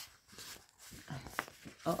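Paper pages of a paperback picture book rustling and flapping as a page is turned, in a few soft bursts with a short crisp snap in the second half. A woman's 'uh-oh' begins right at the end.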